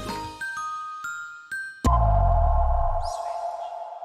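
Closing theme music winding down into a few single chime notes, then a sharp hit with a deep boom about two seconds in and a ringing tone that slowly fades: an outro sting under the channel's logo card.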